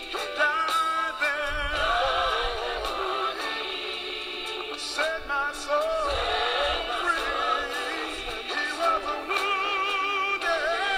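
Gospel recording with sung vocals over instrumental accompaniment. Long held notes waver in vibrato.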